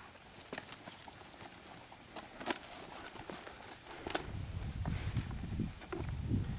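A rider mounting a saddled horse: scattered clicks and knocks of saddle tack and the horse's hooves shifting on dirt. A low rumble builds from about four seconds in.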